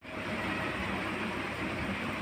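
Steady, even background rushing hiss with no distinct clicks, knocks or voices.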